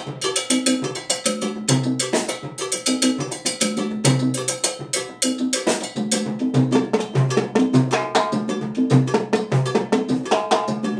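Cuban percussion groove: cowbell and timbales struck with sticks in a steady, dense rhythm, over a repeating low bass pattern.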